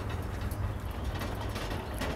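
Metal hand cart loaded with a metal drum rattling and clicking as it is pushed along a paved path, over a steady low rumble.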